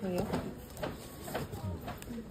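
Indistinct speech: a voice talking, with no words that the recogniser could make out.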